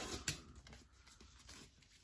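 Faint rustle of vinyl record sleeves and a cardboard shipping box being handled, with a light click about a quarter second in, then near silence.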